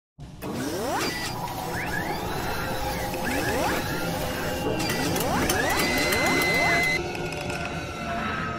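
Sound effects for an animated intro: a series of rising sweeps, about four in all, over mechanical whirring and clicking, with a music bed underneath; the effects drop away about seven seconds in.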